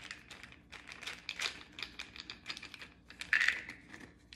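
A small plastic pill bottle is handled and opened, making a string of small clicks and crinkles from the cap and seal. A louder one comes a little over three seconds in.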